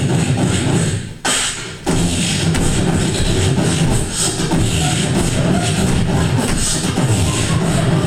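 Dubstep-style beatboxing into a microphone: a dense, continuous low bass line made with the mouth, broken once by short bursts a little over a second in, then running on unbroken.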